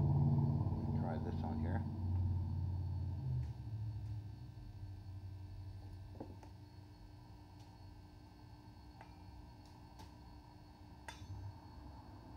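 Steady low electrical hum from a running 200-watt RF unit and its high-voltage rig. It cuts off suddenly about three seconds in, leaving a quiet background with a few scattered sharp clicks.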